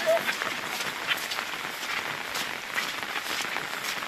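Steady rain falling on the pond and wet grass, an even hiss with scattered pattering, and a brief voice at the very start.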